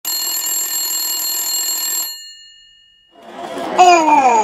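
A telephone bell rings steadily for about two seconds, then stops, its ring fading out over the next second. Near the end, a new sound swells up.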